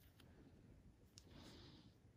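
Near silence: room tone with a few faint clicks and a brief soft hiss about halfway through.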